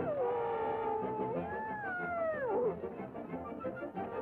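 A wailing, howl-like cartoon sound that slides down, holds, then rises and falls away, ending about two and a half seconds in, over the cartoon's band music.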